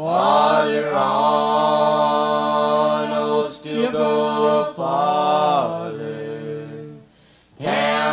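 Family gospel vocal group singing in harmony, holding long drawn-out notes with short pitch slides between them; the voices break off briefly about seven seconds in, then begin the next line.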